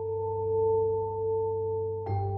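Background music: a soft, sustained synth chord held steady and swelling gently in loudness.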